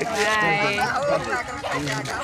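A goat bleats near the start, among men's voices.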